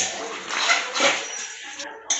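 Chicken pieces in masala sizzling in an aluminium kadai while a metal spatula stirs them, scraping against the pan, with louder bursts near the middle.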